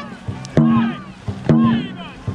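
Dragon boat drum struck twice, about a second apart, each beat followed by a short shouted call keeping the paddling rhythm.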